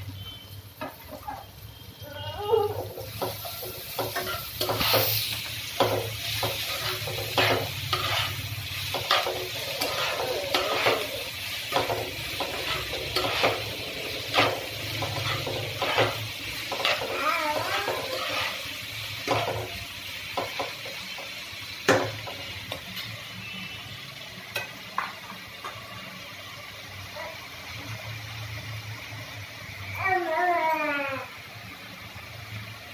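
Sliced onions and green chillies sizzling as they fry in oil in a kadai, while a spatula stirs them with irregular knocks and scrapes against the pan. The stirring starts a couple of seconds in and eases off near the end, leaving mostly the sizzle.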